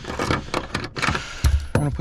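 A steel seat bolt being screwed by hand back into a seatbelt anchor in a truck's cab floor: a run of small metal clicks and rattles, with a dull thump about one and a half seconds in.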